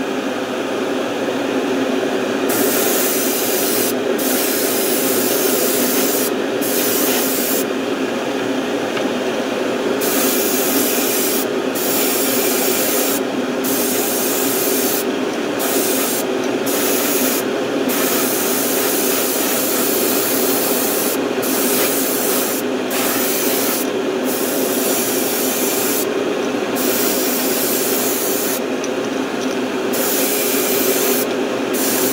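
Airbrush spraying white base-coat paint onto a crankbait: hissing bursts of air and paint, started and stopped by the trigger many times with short pauses, over a steady hum.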